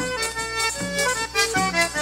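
An accordion playing a melody of short held notes: the instrumental lead-in to a pastoril number.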